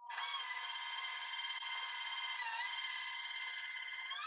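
Stand mixer motor starting up and running with a steady whine as its wire whisk beats flour into sweet potato pie filling. The pitch dips briefly about two and a half seconds in and begins to climb right at the end.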